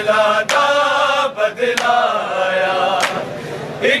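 A group of men chanting a Punjabi noha (Shia lament) together, loud and in unison. A few sharp slaps cut through the chant, the sound of matam, hands striking chests in time with the lament.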